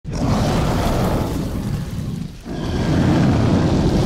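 Cinematic intro sound effect of deep rumbling fire and explosion booms: one loud rumbling surge, a brief dip about two and a half seconds in, then a second surge as a burst of flame.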